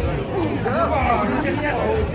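Indistinct chatter of several people talking at once in a large room.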